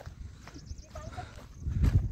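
Wind buffeting the microphone: a low rumble that swells louder near the end.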